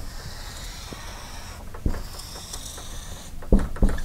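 Dry-erase marker squeaking across a whiteboard in two long strokes as it draws a pair of axes. A few low knocks come near the end.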